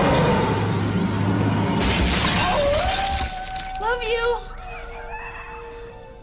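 Film soundtrack: a loud crash with glass shattering about two seconds in, over dense rumbling noise. A wavering pitched cry follows around the middle, then music settles into steady held notes.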